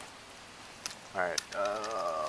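A few faint clicks and rustles of gear, then a person's voice in the second half: a drawn-out, unintelligible call.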